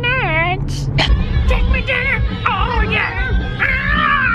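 A man making high-pitched, wavering sing-song vocal noises, with the low rumble of a car's road noise underneath.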